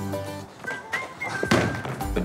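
Background music, with a basketball thudding once about one and a half seconds in.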